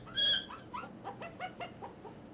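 A baby chimpanzee whimpering and complaining at being laid on its back: one louder high cry at the start, then a quick run of short falling whimpers that fade away near the end.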